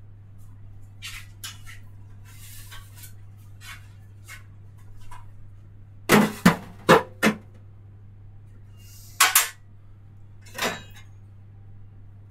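Kitchen and bar items clinking and clattering as they are handled: a few light clicks, then a cluster of four sharp knocks about six seconds in and two more near nine and ten and a half seconds, over a steady low hum.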